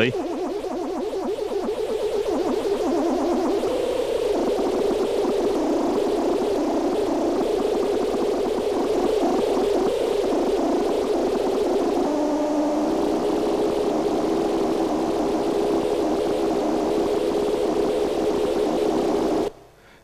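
Small analog synthesizers (a Nanosynth and a Moog Werkstatt) droning, with pitch, pulse width and filter cutoff swept by an analog Lorenz-attractor chaos circuit, over a hiss of noise. The tones flutter rapidly, and the pitch shifts about four seconds in and again past halfway. The sound cuts off suddenly just before the end.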